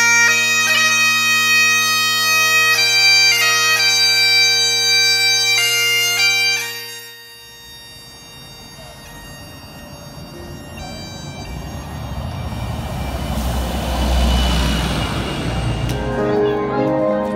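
Great Highland bagpipes playing a tune over a steady drone, the sound dropping away sharply about seven seconds in. After that the pipe tune carries on faintly under outdoor noise that grows louder toward the end.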